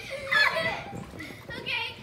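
Girls' excited, high-pitched voices: wordless shouts and squeals, with one burst about half a second in and another near the end.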